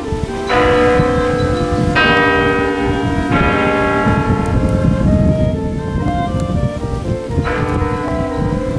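Church bells ringing: several bells of different pitches struck in turn, every second or two, each ringing on into the next. A steady low rumble runs underneath.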